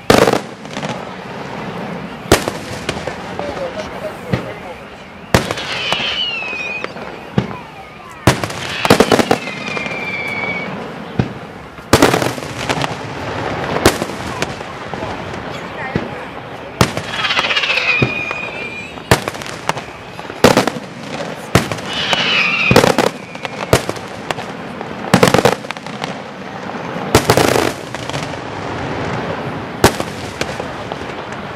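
Aerial firework shells bursting in a display, loud sharp bangs every one to three seconds, some in quick clusters.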